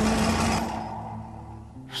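A singer's held note ends about half a second in and dies away over a low sustained accompaniment. Near the end comes a short intake of breath before the next sung line of the Russian folk song.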